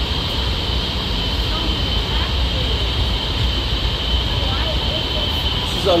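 Steady running noise of a Honolulu Skyline driverless light-rail car in motion, heard from inside the passenger car: an even low rumble with a thin, constant high whine over it.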